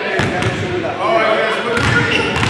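A basketball bounced a few times on a wooden gym floor, with people talking in the background.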